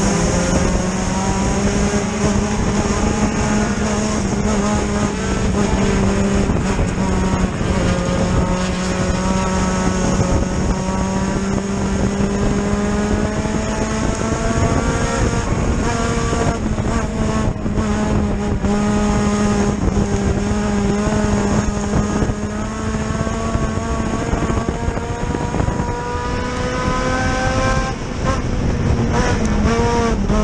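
Hornet-class dirt race car's engine running under way, heard from inside the cockpit, its pitch slowly rising and easing. The engine drops briefly near the end, then picks up again.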